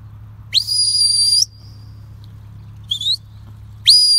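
Shepherd's whistle commands to a working sheepdog: a long whistle that sweeps up and holds high, a short rising chirp near three seconds in, and another long rising-then-held whistle starting just before the end.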